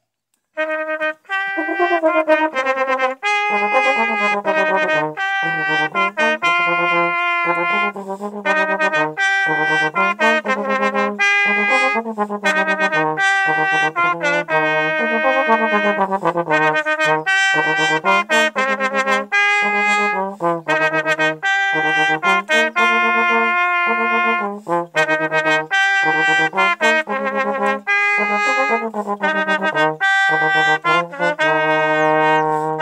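A slide trombone and a trumpet playing a duet together, starting about half a second in and running as a string of sustained notes with short breaks between phrases.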